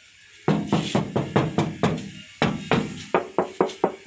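Knuckles knocking on the sheet-metal body of a Suzuki Carry Futura T120SS pickup, about four or five quick knocks a second, each ringing briefly. It comes in two runs with a short pause between, a knock check that the panel is original ('ori').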